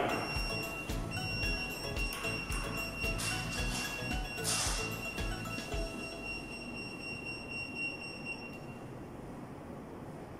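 A UVC germicidal tube light fixture's warning sounder playing an electronic tune, a steady high tone over a regular beat, during its delay before the UV tube switches on. The beat stops about six seconds in and the high tone ends near the end, fading overall.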